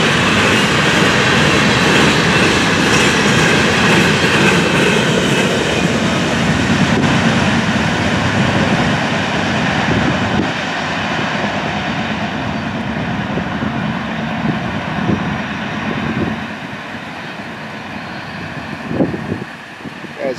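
Empty freight hopper cars rolling past, steel wheels clattering over the rails. The sound fades away in the second half as the end of the train moves off down the track.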